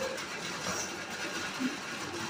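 Pencil writing on paper on a clipboard: faint, uneven scratching over a steady background hiss.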